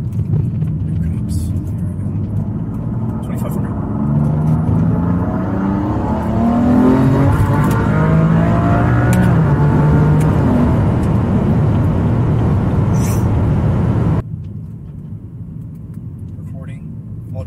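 Twin-turbo inline-six of a 2016 BMW F80 M3 with upgraded Pure turbos and methanol injection, heard from inside the cabin on a hard pull in third gear. About four seconds in, the engine note gets louder and climbs steadily in pitch for several seconds, then holds loud until the sound cuts off abruptly near the end.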